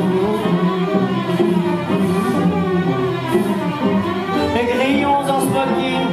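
Chamber string orchestra playing a sustained, flowing passage without voice, cellos and violins bowing together, with a few sliding notes near the end.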